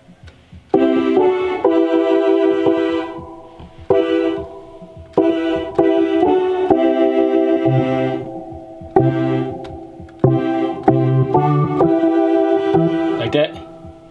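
Chords played on a two-manual electronic home organ: a slow progression of full chords, each struck and left to fade before the next, with bass notes joining about halfway through.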